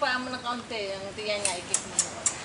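People's voices calling, followed in the second half by a few sharp clicks, about three to four a second.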